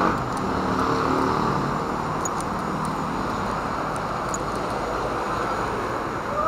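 Steady road traffic noise, with one vehicle's engine standing out over the first couple of seconds before it fades into the general hum.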